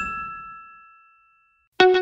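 Logo-sting chime: a ding of a few high tones that rings on for well over a second while the tail of a whoosh fades out beneath it. Just before the end, background music with a steady plucked beat begins.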